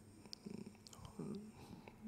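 A man's voice making faint, brief hesitation sounds at a lectern microphone, twice, about half a second in and again a little after a second, over quiet room tone.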